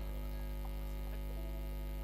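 Steady low electrical mains hum from the amplified stage sound system, with no music playing.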